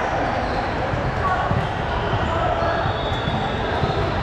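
Busy gymnasium hubbub: many overlapping voices echoing in a large hall, with balls thudding on the hardwood floor.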